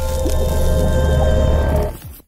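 Logo-reveal intro music: a loud, heavy bass with several held tones and a wash of noise over it, dropping away near the end.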